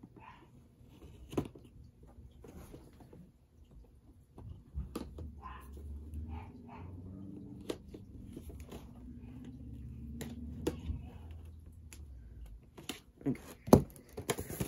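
Packaging of a boxed action figure being handled and opened: scattered small clicks and taps of cardboard and plastic, with a low steady drone through the middle and a sharp knock near the end.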